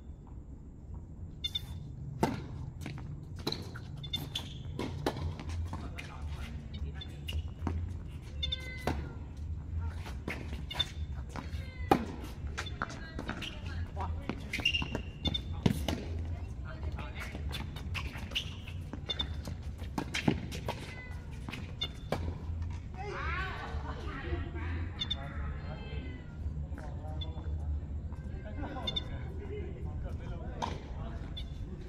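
Tennis rally on an outdoor hard court: sharp pops of racket strikes and ball bounces about once a second, over a steady low hum. Players' voices call out about three-quarters of the way in and again near the end.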